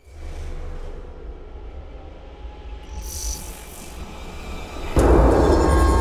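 Cinematic sound-design intro: a deep rumbling drone, a short whoosh about three seconds in, then a sharp hit about five seconds in that swells the rumble louder with ringing tones.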